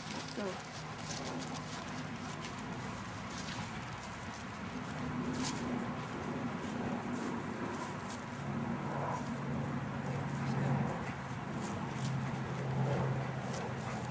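Footsteps of a person and a dog walking over grass scattered with dry leaves, with a steady low motor hum that grows stronger about halfway through.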